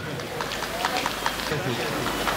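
Scattered hand clapping from a small audience: a patter of short, uneven claps, with murmured chatter underneath.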